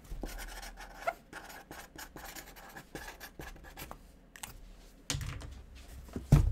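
Hands handling and sliding a cardboard jersey box on a table: scratchy rustling with small clicks, a knock about a second in and a heavier thump about five seconds in.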